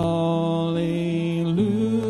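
Worship song: a man singing a long held note on "hallelujah", stepping up to a higher held note about one and a half seconds in, with acoustic guitar accompaniment.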